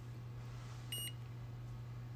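Handheld infrared forehead thermometer giving one short, high beep about a second in as it takes a reading.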